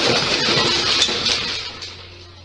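Glass shattering as a glass-top coffee table breaks: a loud crash of shards scattering across the floor that dies away over about two seconds. Heard through a home security camera's microphone.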